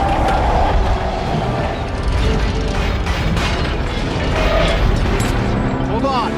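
Action-film soundtrack: orchestral score under deep booms and metallic crashing as a huge armoured alien creature is smashed and crashes down, with a steady heavy rumble and several sharp impacts.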